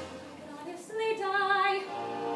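A teenage girl singing a short held phrase of a show tune, starting about a second in after a brief lull.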